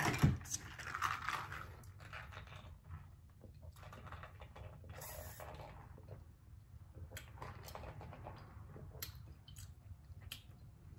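A plastic drink cup knocked once as it is picked up, then faint sipping of lemonade through a straw, with small mouth sounds and clicks.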